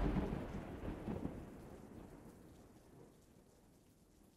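Rumbling thunder with rain, dying away over about two seconds, with a small swell of rumble about a second in.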